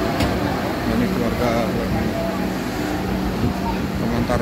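People talking in the background over the steady low hum of an idling bus engine.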